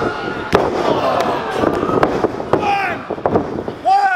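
A wrestler's body slamming down on the ring canvas from a jump, one loud sharp slam about half a second in and a few smaller thuds on the mat later, over a crowd shouting and cheering.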